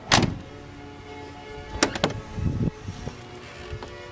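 A loud thump at the start. About two seconds in, the chrome rear door handle and latch of a 1979 Rolls-Royce Silver Shadow II click twice, and the door opens with a few low knocks. Background music plays throughout.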